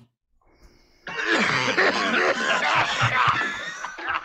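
A man making a rough, cough-like throat sound mixed with laughter, starting about a second in and lasting about three seconds, as he tries to shift something caught in his throat.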